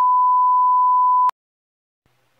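Broadcast test tone, the kind that goes with TV colour bars: one steady, pure, high beep that cuts off suddenly a little past halfway.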